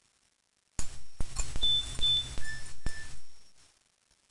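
A mobile phone's text-message alert: a sudden burst of rattling buzz with clicks and a few short high beeps, starting about a second in and dying away after about two and a half seconds.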